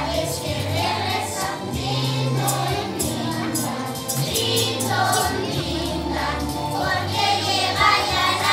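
A group of young children singing a Christmas song together over backing music with a steady bass line.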